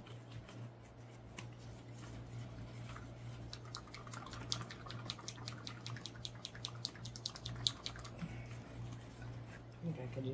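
Small plastic bottle being shaken by hand, giving a rapid run of sharp clicking rattles from about three and a half seconds in until about eight seconds, over a steady low electrical hum.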